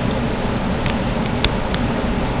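Steady outdoor noise, like distant traffic or wind, with a sharp click about one and a half seconds in.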